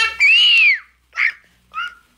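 A single loud, high-pitched squeal that rises and falls over about half a second, followed by two short vocal sounds.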